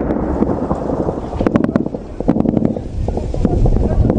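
Outdoor field recording with a heavy low rumble of wind on the microphone, broken by quick clusters of sharp cracks about a second and a half in and again just after two seconds.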